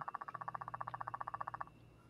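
A fast, even trill: a mid-pitched tone pulsing many times a second. It stops about a second and a half in, leaving a faint low hum.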